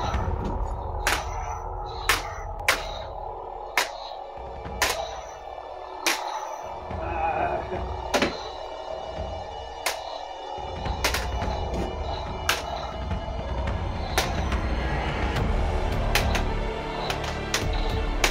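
Lightsaber duel with ArtSaber lightsabers: sharp blade clashes about once a second, coming a little faster near the end, over background music.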